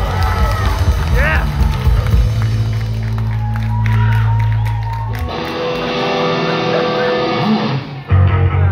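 A rock band begins a song live. The crowd cheers and shouts at first, then a low note is held steadily for about three seconds. After it a sustained chord rings out on the guitars.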